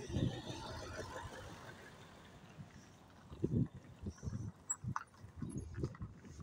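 Coach bus driving past close by, its tyre and engine noise fading away over the first couple of seconds. Short, low thumps come and go throughout.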